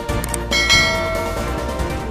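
A bell-chime sound effect strikes about half a second in and rings on, fading, over background music; it is the notification-bell 'ding' of a YouTube subscribe animation.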